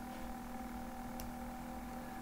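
Quiet steady low hum of room tone, with one faint click a little over a second in: a computer mouse click switching settings tabs.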